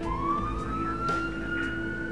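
Ambulance siren wailing: one long note that comes in suddenly and rises slowly in pitch, over a low steady rumble.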